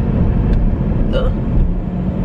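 Steady low rumble of road and engine noise inside a moving car's cabin, with one faint click about half a second in.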